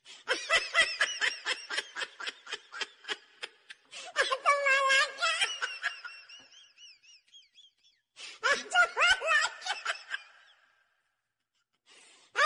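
People laughing: a fast run of ha-ha laughs, then a higher, drawn-out laugh that trails off into thin squeaks, and another burst of laughter about eight seconds in. It stops a second or so before the end.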